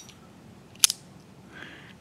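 Two sharp metallic clicks from a Boker Kalashnikov push-button automatic knife, one right at the start and a louder one a little under a second later, as the spring-driven blade is worked and fires open into its plunge lock.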